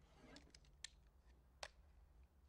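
Quiet handling of metal objects in an aluminium case: a soft rustle, then two sharp metallic clicks, the second near the end.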